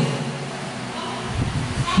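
A brief pause in a man's sermon through a handheld microphone and PA, leaving the hall's reverberation and a faint background. Low sounds come into the microphone about one and a half seconds in, just before his voice returns.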